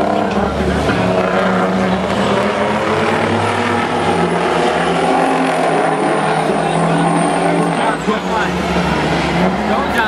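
Diesel engines of racing semi-truck tractors running hard around an oval, a steady engine drone whose pitch wavers up and down as they lap.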